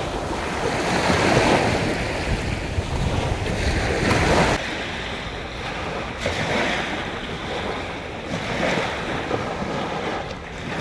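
Sea waves washing onto a sandy beach, the surf swelling and easing every second or two, with wind rumbling on the microphone. It turns a little softer after about four and a half seconds.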